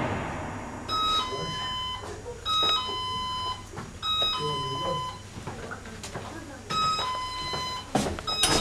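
Electronic two-tone doorbell chime rung four times in a row, each a short higher note followed by a longer lower one.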